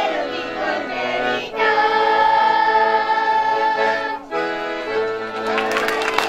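A group of children singing a folk song with piano-accordion accompaniment, in long held notes with short breaks between phrases. A few hand claps come in near the end.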